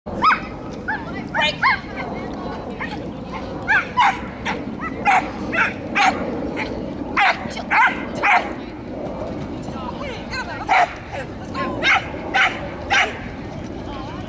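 A dog barking in short, sharp barks, one or two a second, with a pause of about two seconds a little past the middle, as it runs an agility course.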